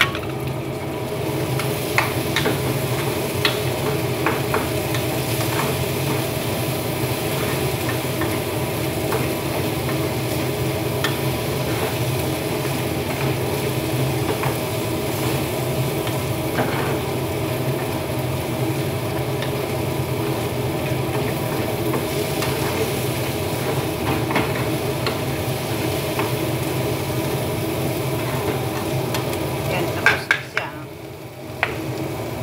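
A spoon stirring a sugary mixture cooking in a stainless-steel pot on the stove, with steady sizzling, occasional clicks of the spoon against the pot, and a steady hum underneath.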